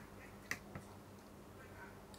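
Two light plastic clicks, a sharp one about half a second in and a fainter one just after, as a fingertip taps a knockoff Lego minifigure whose leg sits loose in its hip joint.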